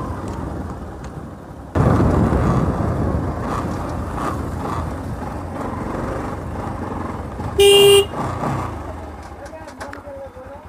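Bajaj Pulsar NS200 single-cylinder motorcycle running along a road, its engine noise stepping up suddenly a couple of seconds in and easing off near the end. About eight seconds in there is one short horn blast on a single steady tone.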